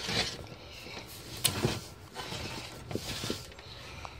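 Handling noise: a scattered series of light clicks, knocks and rustles as the plastic box fan and the camera are moved around.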